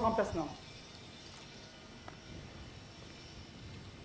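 A shouted parade-ground command, its vowels drawn out, ends about half a second in. After it there is only faint open-air background, with one soft click about two seconds in.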